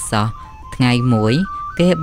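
A man's voice speaking Khmer over background music, a thin, simple melody line that steps from note to note.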